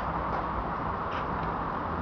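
Steady outdoor background noise with a low hum, and a faint tick about a third of a second in and another just after a second.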